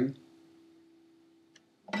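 Acoustic guitar strings left ringing after a played phrase, fading away over about a second into near silence, with one faint click near the end.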